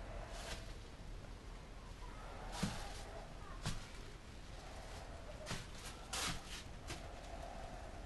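Faint handling noises as a chip brush smooths wet epoxy over a surfboard bottom: soft brushing and rustling with about half a dozen irregular light clicks and taps, over a low steady hum.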